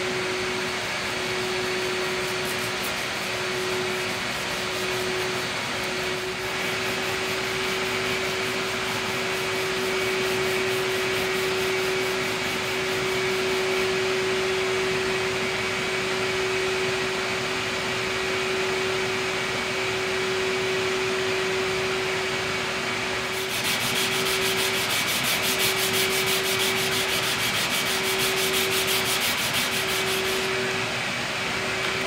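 Hand-sanding the lacquered finish of a guitar neck with sandpaper, in steady back-and-forth strokes. About three-quarters of the way through, the strokes become louder and quicker as a strip of abrasive is pulled around the neck. A steady machine hum runs underneath.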